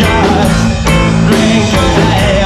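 Live rock band playing: electric guitar, bass guitar and drum kit, with a singer's voice over them and regular drum hits.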